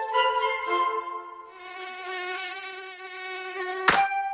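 Cartoon mosquito buzzing sound effect: a wavering buzz that starts about a second and a half in, over held notes of children's-song music. It is cut off near the end by one sharp snap as the gecko catches the mosquito.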